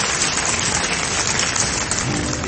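Audience applauding: a dense, steady clapping.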